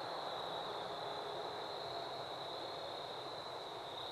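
Insects trilling steadily at one high pitch over a faint background hiss.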